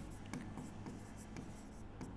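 Stylus writing on an interactive whiteboard screen: faint, irregular taps and short scratches of the pen strokes.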